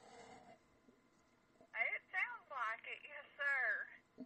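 A woman's voice heard faintly over a telephone line, speaking in short phrases from about two seconds in, after a near-silent pause.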